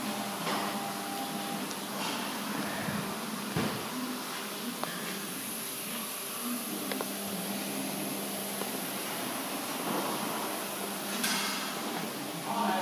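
Steady mechanical hum of workshop background noise, with a few faint clicks and knocks.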